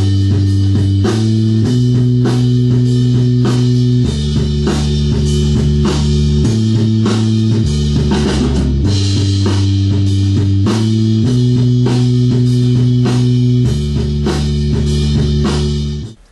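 Rock band playing: sustained keyboard chords over a bass line that moves every second or two, with a steady drum beat and guitar. The whole band stops abruptly at the end.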